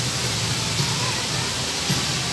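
Steady rushing hiss of park spray fountains, with faint crowd voices behind it.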